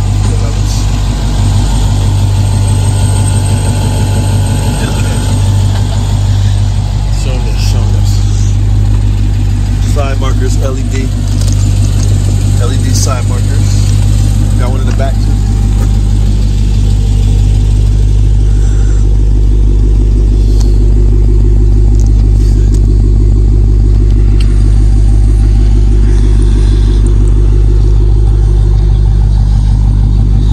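Dodge Challenger Hellcat Redeye's supercharged 6.2-litre HEMI V8 idling steadily, a deep, even hum.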